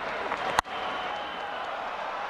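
A single sharp crack of a cricket bat striking the ball about half a second in, over steady stadium crowd noise.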